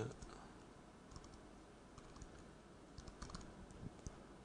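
Faint, sparse computer keyboard keystrokes: a few scattered clicks through otherwise near-silent room tone.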